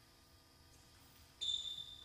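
A sudden high-pitched ringing ping about a second and a half in, fading over about half a second.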